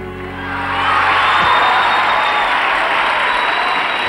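The band's last held chord fades out, and a studio audience breaks into applause and cheering, swelling up within the first second and staying loud.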